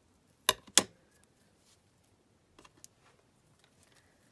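Two sharp clicks from a pair of craft scissors about a third of a second apart, then two faint clicks a couple of seconds later.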